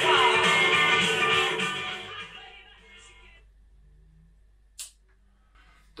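Guitar rock music playing loudly from a TENMIYA RS-A66 Bluetooth boombox, dying away after about two seconds as it is turned down. One short click follows near the end.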